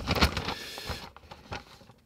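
Sheet of lined notebook paper rustling and crackling as a folded letter is opened out by hand, loudest in the first half-second and dying away towards the end.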